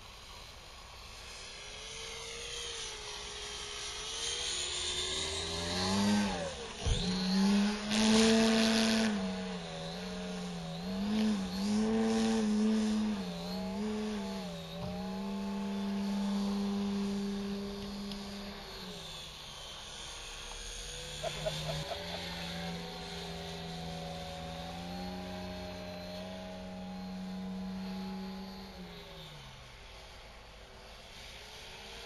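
Radio-controlled Pitts biplane model's engine heard in flight, its drone rising and falling in pitch as it manoeuvres, dropping away briefly about two-thirds in before coming back steadier. A short loud rush of noise about eight seconds in.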